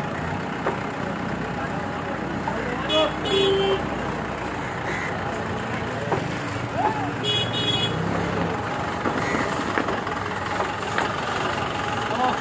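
Steady street traffic noise with a vehicle horn giving a short double toot about three seconds in and again about seven and a half seconds in. Crows caw now and then.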